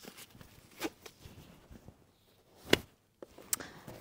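Quiet rustling and small clicks of gloves being pulled on and a person shifting in a car seat, with one sharp knock about two and a half seconds in.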